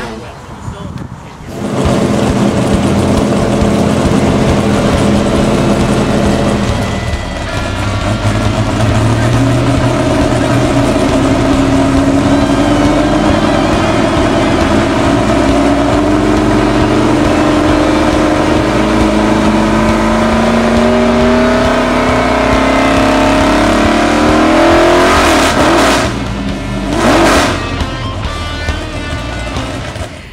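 Supercharged 427 big-block V8 of a 1967 Camaro funny car running, its pitch climbing slowly as it is revved up. Two sharp throttle blips come near the end.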